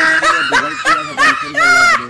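A person laughing in a run of short voiced bursts that ends in a longer, higher held note.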